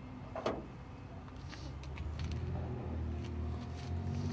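Low, steady rumble of a motor vehicle engine running nearby, growing louder about two seconds in.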